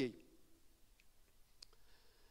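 Quiet pause with faint room tone and two small clicks, one about a second in and another about half a second later.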